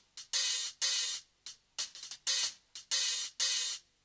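Opening bars of a Thai pop song: a hi-hat and cymbal rhythm of short closed strokes and longer open ones, about two to three a second, with little underneath.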